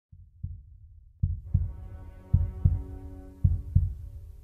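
Heartbeat sound effect: low double thumps, one pair about every second, four pairs in all, with a steady droning chord coming in after about a second.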